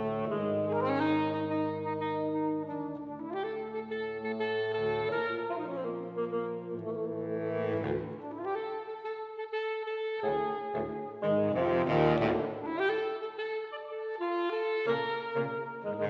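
Saxophone quartet of soprano, alto, tenor and baritone saxophones playing together in sustained chords, with rising slides into notes; the low baritone line drops out briefly past the middle.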